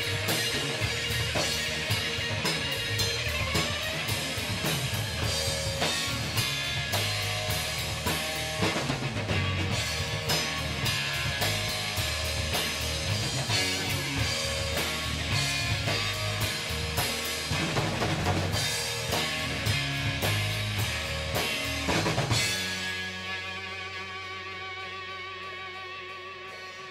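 A live rock band plays an instrumental passage with drum kit, electric guitars and bass guitar, and no singing. About 22 seconds in the band stops on a hit, leaving a sustained guitar chord ringing and slowly fading.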